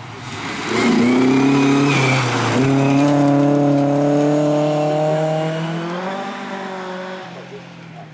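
Rally car passing on a gravel stage. Its engine is loud under acceleration as it arrives, with a hiss of gravel spray, and dips briefly in pitch about two and a half seconds in. It then holds a steady drone that fades as the car drives away.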